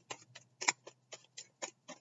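Tarot cards being shuffled by hand: a quick, slightly uneven run of light clicks, about four or five a second, with one sharper snap near the start.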